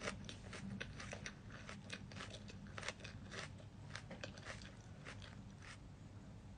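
Close-up chewing of crisp salad leaves: a quick, irregular run of small crunches that thins out near the end.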